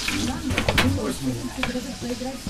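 Food frying in a pan, sizzling steadily, with a few sharp clicks of a utensil against the pan.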